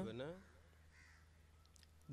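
A man's voice trails off in a falling tone, then near quiet with a single faint bird call about a second in.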